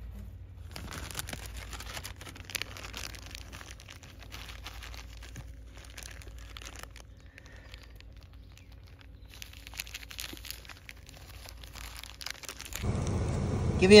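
Clear plastic zip-top bag crinkling in many small crackles as a hand inside it picks up dry camel droppings from sandy dirt. A louder low rumble comes in near the end.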